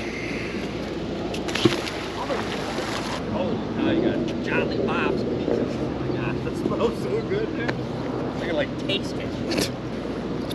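Faint, indistinct voices over a steady bed of outdoor background noise, with a hiss through the first three seconds and a few scattered clicks.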